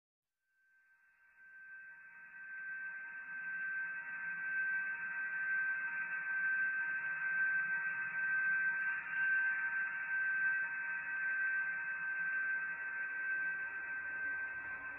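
Ambient drone music: a single steady high tone held over a band of hiss, fading in over the first few seconds.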